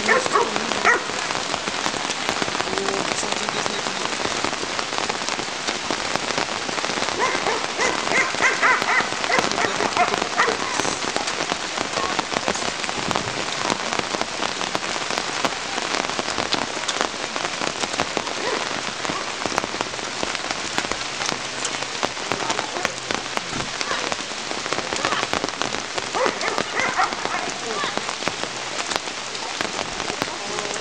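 Steady rain, a dense patter of drops.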